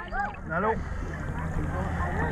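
Water washing around a camera held at the waterline, over a low steady hum and the distant voices of people in the water.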